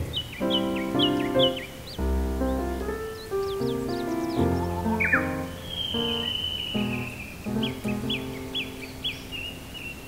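Solo piano playing a slow, gentle melody over recorded forest birdsong. Short bird chirps run through it, and one longer drawn-out bird call comes about five seconds in.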